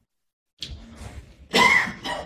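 A man coughs once, a short, loud cough about one and a half seconds in, after a moment of silence.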